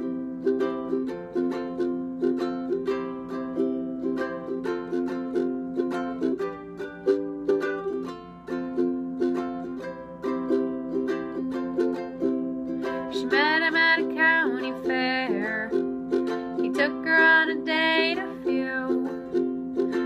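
A ukulele strummed in a steady rhythm, chords changing as it goes. In the second half a voice briefly joins in twice over the strumming.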